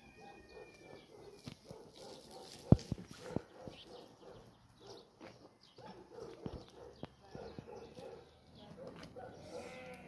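Small wood fire crackling under a pot of milk, with scattered clicks and one sharp pop about three seconds in, while livestock bleat in the background.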